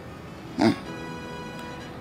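Soft sustained background music of held, steady chords, with a woman's brief sighing 'ah' about half a second in.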